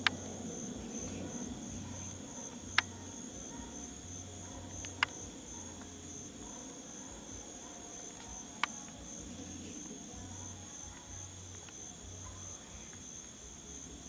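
Insects chirring: a steady, evenly pulsed high trill. It is broken by four sharp clicks, at the very start, about three seconds in, about five seconds in and about eight and a half seconds in.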